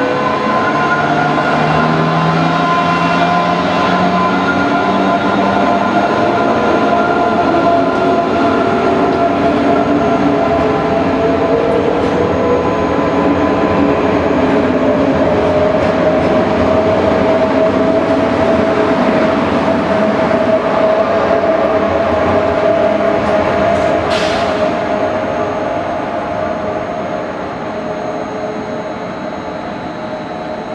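Electric passenger train pulling out of the station: a traction-motor whine climbs steadily in pitch as it speeds up over the rumble of the wheels. A brief high squeak comes near the end, then the sound fades as the train moves away.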